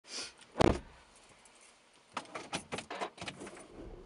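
Handling noise inside a car's cabin as a person shifts in the driver's seat: a single dull thump about half a second in, then a run of light clicks and metallic jingling from about two seconds in.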